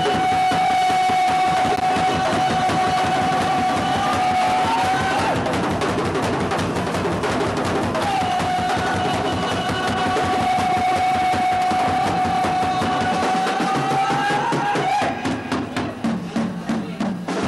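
Live rock band playing with drums and cymbals throughout, while the singer holds a long high note twice: once for about five seconds from the start, and again for about seven seconds from around the eighth second.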